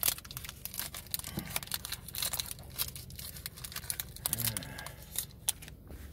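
Foil wrapper of a Pokémon booster pack crinkling and tearing as it is handled and opened, a dense run of small irregular crackles.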